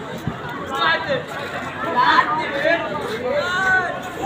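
Several men talking and calling out over one another in a street crowd, with no single clear speaker.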